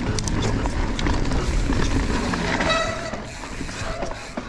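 Mountain bike ridden fast down a dirt trail: tyre noise with a steady clatter of knocks and rattles from the bike. A brief high whine sounds near the three-second mark.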